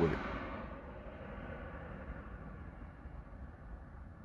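The tail end of a man's word, then a faint, steady low background hum inside a parked car, with nothing else happening.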